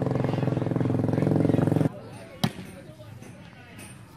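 A motorcycle engine running steadily at idle, cutting off suddenly about two seconds in; about half a second later comes one sharp knock.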